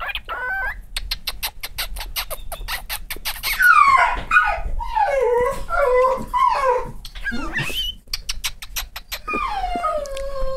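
A pet animal making a quick run of sharp clicks, about eight a second, then a string of gliding, wavering chirps and calls, with more clicks and another call near the end.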